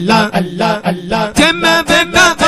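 Male voices chanting a devotional zikr, short syllables repeated about twice a second on a low, steady pitch. About one and a half seconds in, a higher voice joins with a rising and falling melodic line.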